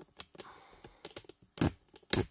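A handful of light, irregular clicks and taps from handling, the loudest about one and a half seconds in.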